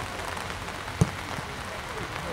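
Steady rain noise, with one sharp thump about a second in.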